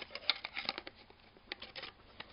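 Back cover of a Huawei U8800 Pro (IDEOS X5) smartphone being fitted onto the phone by hand: a quick run of small clicks and scrapes in the first second, then a second short cluster near the end.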